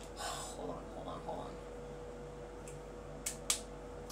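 Hollowed-out plastic marker being handled and fitted together, with two sharp clicks in quick succession a little past three seconds in as its plastic parts are pressed together. A faint steady hum runs underneath.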